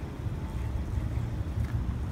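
A low, uneven outdoor rumble with no distinct event.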